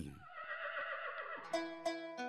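A horse whinnying, fading away, then plucked-string music begins with clear single notes about one and a half seconds in.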